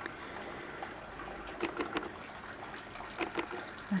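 Light rain falling: a steady soft hiss with a few faint scattered ticks of drops.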